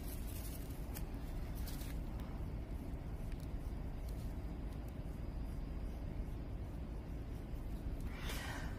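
A steady low rumble of background noise, with a few faint soft strokes of a watercolour brush on paper in the first two seconds.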